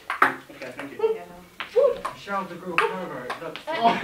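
Ping pong ball clicking off paddles and bouncing on classroom desk tops during a rally, a few sharp clicks about a second apart, under murmuring voices.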